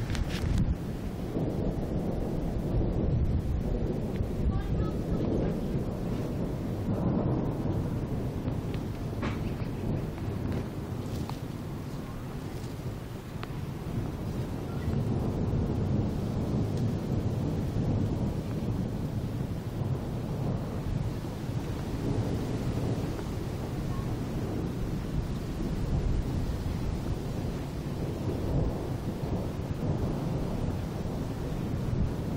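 Rolling thunder: one long, unbroken low rumble that eases a little about halfway through and then builds again.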